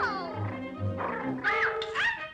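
Early-1930s cartoon orchestra score with a puppy's high yips over it: a falling yelp at the start and another short call about one and a half seconds in.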